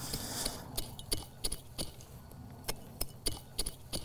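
Hands working dry, crumbly soil while planting a tomato seedling: irregular small crackles and clicks of earth and dry twigs, with a brief rustle at the start.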